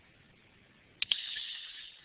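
Near silence, then about a second in a sharp mouth click and a short hiss of an indrawn breath, fading over about a second: the lecturer breathing in just before he speaks.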